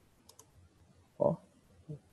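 Computer mouse clicks: a faint quick double click about a third of a second in, then a short dull thump a little after one second and a smaller one near the end.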